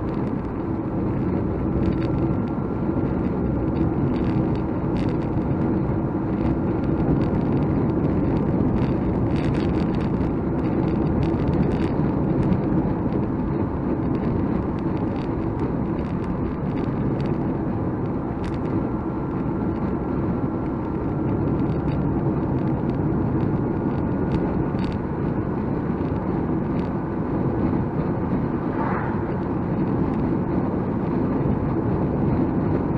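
Nissan Micra K12 cruising at a steady speed, heard from inside the cabin: an even mix of engine and tyre-on-road noise, with occasional faint clicks.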